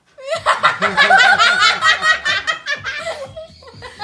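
Loud, hearty laughter from several voices at once, in quick repeated bursts that thin out and get quieter near the end.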